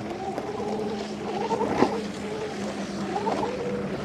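Ather Rizta electric scooter's motor whining, its pitch wavering up and down as it climbs a loose gravel slope with skid control off and the rear wheel slipping; a single sharp click comes a little under two seconds in.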